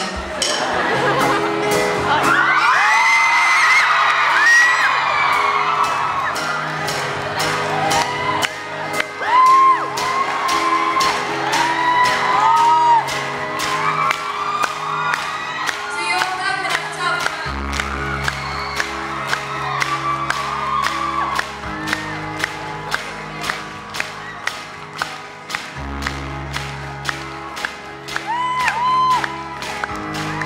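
Live pop band playing to an audience that claps along in time, about two claps a second, with whoops and singing over it. Bass and fuller band come in a little past halfway.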